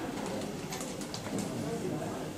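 Low, indistinct murmur of people talking in a hall, with a few light clicks about a second in.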